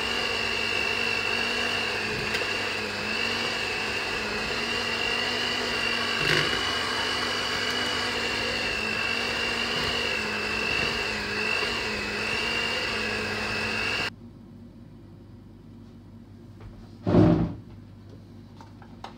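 Electric hand mixer running steadily on its second speed setting, beating grated carrot into cake batter in a plastic bowl, with a constant high whine over a low hum. It cuts off suddenly about fourteen seconds in, and a short loud thump follows near the end.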